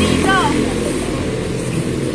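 Motorcycle engine of a tricycle (motorcycle with sidecar) idling steadily. A voice speaks briefly about half a second in.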